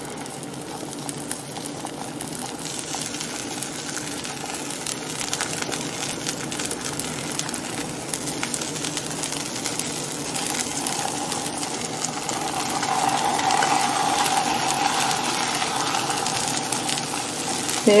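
A tortilla frying in butter in a hot stainless steel pan: a steady sizzle with fine crackling, getting a little louder after about ten seconds.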